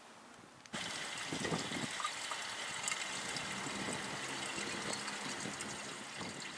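Steady running and trickling water in a hot-spring basin, starting suddenly about a second in after a faint, quieter stretch.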